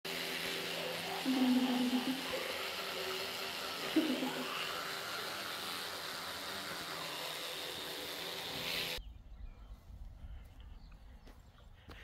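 Electric toothbrushes buzzing with a steady hum over a hiss, with a couple of short muffled voice sounds. The hum cuts off abruptly about nine seconds in, leaving only a faint low wind rumble.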